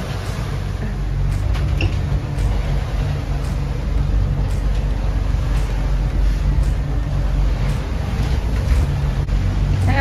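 Motor cruiser's engines running steadily under way, heard from inside the cabin as a low drone with hull and water noise from punching through a choppy sea, and a few faint knocks.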